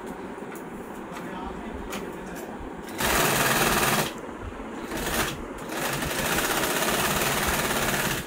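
Industrial sewing machine stitching through a leather steering wheel cover in bursts: a loud run of rapid stitching lasting about a second, starting three seconds in, a brief burst near five seconds, then a steady run over the last two seconds.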